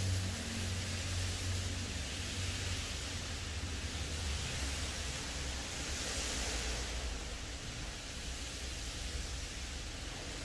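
Steady hiss of heavy rain, with a low hum underneath.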